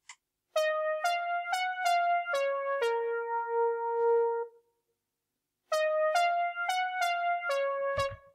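Sibelius notation software playing back a single-line melody with a synthesised instrument sound. It plays one phrase of about six evenly spaced notes ending on a long held low note. After about a second's pause a second phrase of similar rhythm begins.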